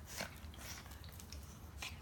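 A pug and a chihuahua play-fighting over a rope toy: scuffling and mouthing sounds, with a few short clicks, one of them a little louder just after the start.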